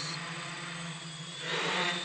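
Small ArduCopter quadcopter's propellers and motors buzzing steadily in flight, with a rush of noise swelling near the end as it manoeuvres hard.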